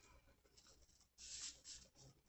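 Faint scratching of a pen drawing on a sheet of paper, in two short strokes a little past a second in, against near silence.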